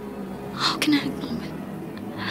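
A woman's voice speaking over a steady background film score.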